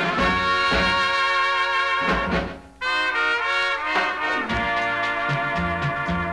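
A dance orchestra playing an instrumental passage of a ballad, from a 78 rpm record: held chords, with a short break about two and a half seconds in before the band comes back in.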